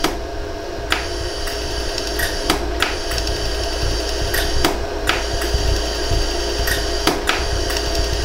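LaserStar pulsed jewelry laser welder firing single pulses onto a hollow gold earring: about a dozen sharp ticks at uneven intervals, as the repaired spots are melted together to fill pinholes. A steady hum runs underneath.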